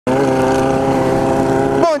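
Honda CB600F Hornet's inline-four engine running at a steady speed while the bike cruises, a constant, even-pitched hum with no revving.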